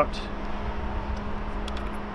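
Steady low background rumble with a faint steady hum, and a few faint light ticks in the second half.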